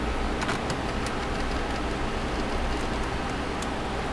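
Steady background hum of room noise, with a few faint light clicks in the first second.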